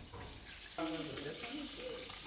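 Food sizzling in a frying pan, a steady hiss, with indistinct voices coming in about a second in.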